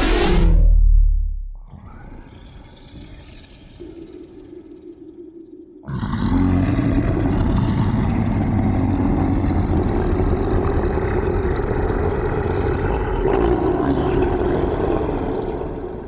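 Dark horror sound-design drone: a loud hit with a deep boom that dies away over a second or so, then a low, quieter drone. About six seconds in it jumps suddenly into a loud, dense rumbling drone that holds and begins to fade near the end.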